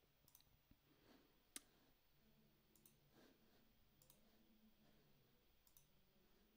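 Near silence: room tone with about five faint, widely spaced computer-mouse clicks, the clearest about a second and a half in.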